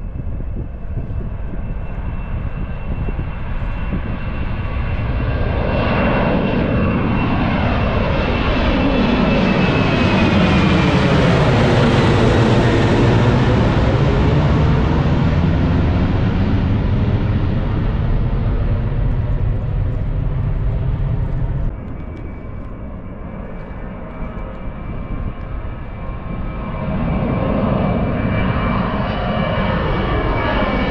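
Airliner passing low overhead: engine noise swells to a peak about twelve seconds in, with a high whine that falls in pitch as it goes by. The sound cuts off abruptly about two-thirds of the way through, and another aircraft's engines build near the end.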